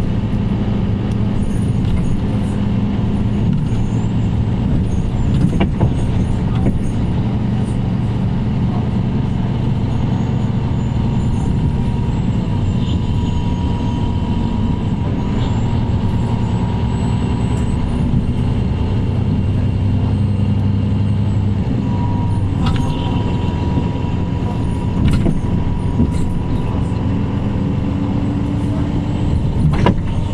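Onboard sound of a 2014 Mercedes-Benz Citaro C2 K city bus, its OM936 six-cylinder diesel running with a steady low hum, with scattered rattles and knocks from the body. A thin steady whine comes in about halfway through.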